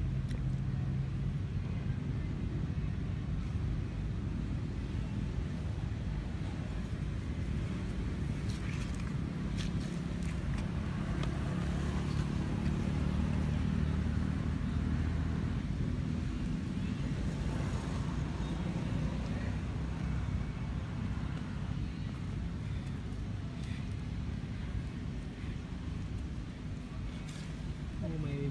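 Steady low rumble of a motor vehicle's engine running nearby, swelling a little around the middle, with a few faint clicks.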